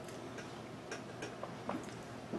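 A handful of faint, irregularly spaced clicks over quiet room tone.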